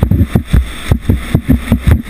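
Skeleton sled running at speed down an ice bobsleigh track: a loud, continuous low rumble from the steel runners on the ice, with rapid, irregular knocks and rattles.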